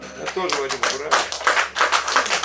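Audience applauding, the clapping building from about half a second in, with a few voices among it.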